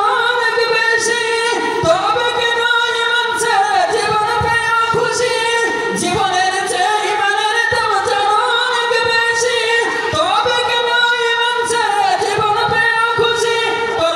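A male voice singing a Bengali Islamic gojol unaccompanied into a handheld microphone, in long held notes that bend and ornament the melody without pause.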